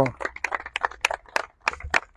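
Scattered applause from a small group: separate hand claps, about six or seven a second.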